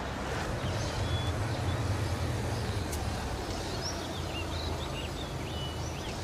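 Outdoor ambience of motor-vehicle traffic: a low steady rumble, strongest in the first few seconds, with short high chirping calls scattered through it.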